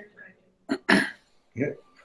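A person clearing their throat briefly about a second in, followed by a short spoken "yeah".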